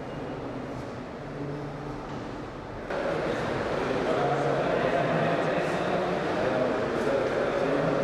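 Indistinct conversation of several people talking at once in a room. About three seconds in, it cuts abruptly to a louder, busier stretch of overlapping voices.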